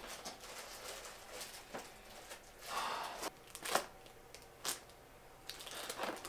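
A cardboard box of crackers being handled and rustled, with a few light knocks and two stretches of crinkling noise, one about halfway through and one near the end.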